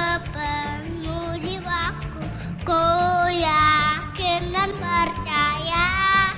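A young boy singing an Indonesian worship song into a handheld microphone over a recorded backing track, with long held notes that waver in pitch near the start, in the middle and near the end.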